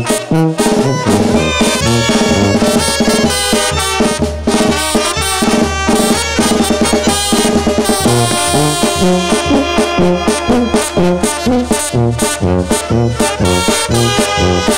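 Oaxacan brass banda playing an instrumental break with no singing: trumpets and trombones carry the melody over a pulsing tuba bass line and drums on a steady beat.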